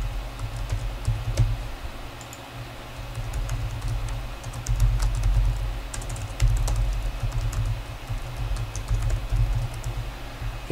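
Typing on a computer keyboard: irregular runs of key clicks with short pauses between them, with dull low knocks under the keystrokes.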